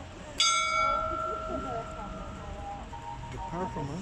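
The small bell at the top of the Gabriadze theater's clock tower, struck once about half a second in, ringing with several clear tones that fade over about two seconds. People talk faintly underneath.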